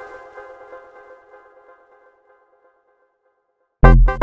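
Electronic music from a demo soundtrack: a held synth chord fades away to silence over about two and a half seconds, then, just before the end, a loud beat with heavy bass and drums comes in abruptly.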